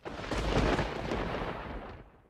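A loud, deep rumbling boom with a rushing hiss that starts suddenly, holds, and dies away near the end.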